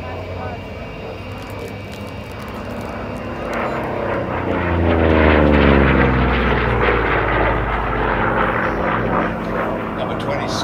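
Vought F4U Corsair's 18-cylinder radial engine on a low, fast pass, rising to its loudest mid-way and dropping in pitch as the fighter goes by.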